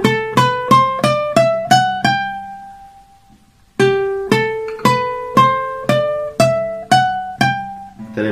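Requinto guitar picked with a plectrum, note by note: a rising run of single notes up the third, second and first strings, the 'llamada' that leads into C major. It is played twice: the first run ends on a note left ringing, and the second starts about four seconds in.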